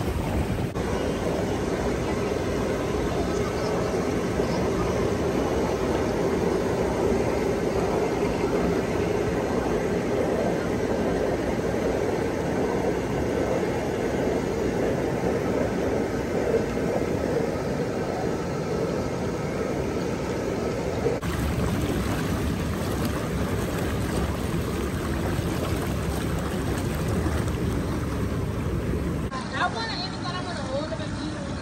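Hot tub jets churning and bubbling the water in a steady, loud rush.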